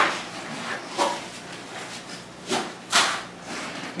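Nylon strap being yanked tight in short rasping pulls through its buckle to cinch climbing sticks onto a hang-on tree stand, four pulls with the loudest near the end.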